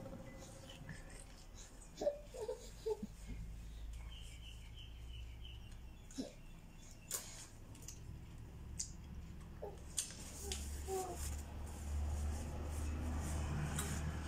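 Quiet room with faint, scattered taps and rustles as pineapple pieces and a paper napkin are handled, plus a few brief, faint vocal sounds.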